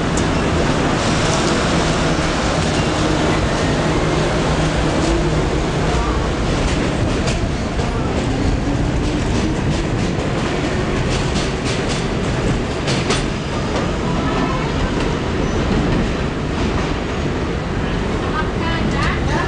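A New York City Subway train pulling out of a station: a steady loud rumble with a slowly rising motor whine. In the middle comes a run of clicks from the wheels passing over the rail joints.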